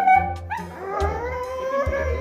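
A dog howling to beg for chicken from the table: a short call, then about half a second in a long drawn-out howl that rises slowly in pitch.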